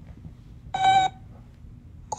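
A cartoon robot's single short electronic beep, a steady tone with overtones, lasting about a third of a second, about a second in.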